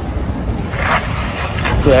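Low, steady rumble of wind on the microphone mixed with street noise, with a short hiss about a second in.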